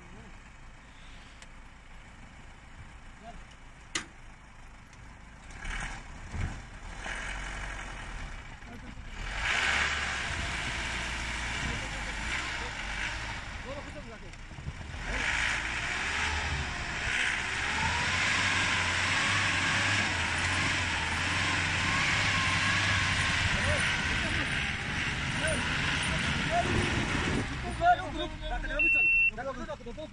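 Vehicle engines revving under load as an SUV stuck in snow is towed and pushed. The sound builds a few seconds in, dips briefly midway, then runs loud until near the end, with people's voices over it.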